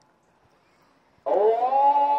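Near silence, then a little past a second in the afternoon call to prayer (ikindi ezan) starts suddenly over mosque loudspeakers, relayed by the central system: a muezzin's voice gliding upward into a long held note.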